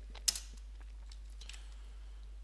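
A single computer keyboard keystroke about a third of a second in, then a few faint key clicks, over a steady low hum.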